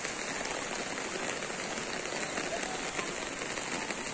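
Heavy rain falling steadily, an even hiss of rain on wet ground.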